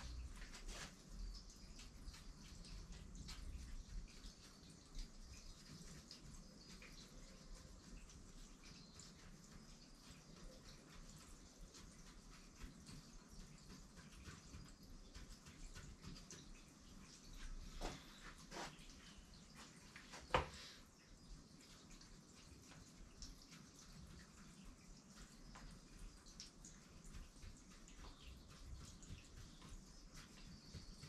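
Near silence: faint room tone with scattered soft clicks and taps, the sharpest one about twenty seconds in.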